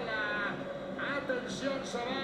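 A football broadcast playing at low volume: a commentator talking over the match.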